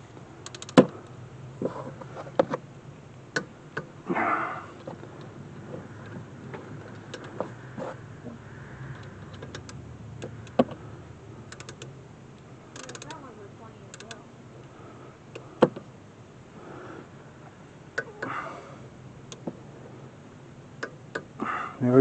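Scattered metallic clicks and taps of a ratchet and wrench on rear brake caliper bolts as they are tightened to 20 foot-pounds. Single sharp clicks come a second or several apart with quieter handling noise between.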